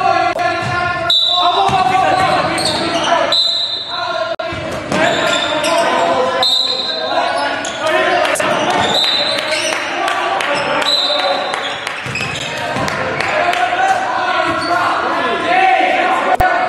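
Basketball shell-drill practice on a hardwood gym floor: a basketball bouncing, sneakers giving short high squeaks every two or three seconds, and players calling out to each other, all carrying in the gym.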